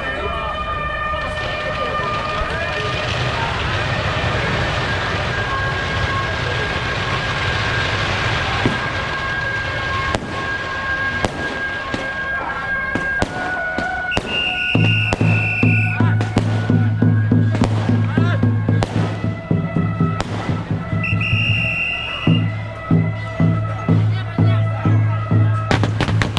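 Firecrackers going off in scattered sharp pops that grow denser in the second half, over procession music and voices. From about two-thirds of the way in, a loud, deep, steady tone comes in under the pops.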